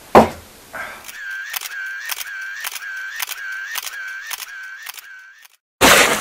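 Camera shutter sound effect: a sharp hit at the start, then a run of shutter clicks about twice a second with a whirring motor-drive wind between them, and a short, louder burst near the end.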